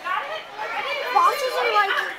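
Children talking and chattering over one another.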